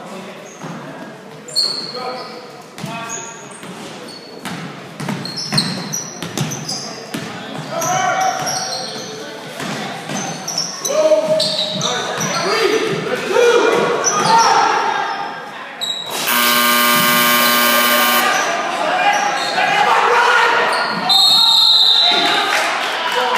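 Basketball bouncing on a hardwood gym floor amid players' shouts and short sneaker squeaks, all echoing in a large gym. About sixteen seconds in, a buzzer sounds steadily for about two seconds, and a short high whistle follows near the end.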